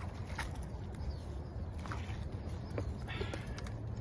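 Scattered light knocks and scuffs as a large fish is lifted by hand out of the water onto the bank, over a steady low rumble.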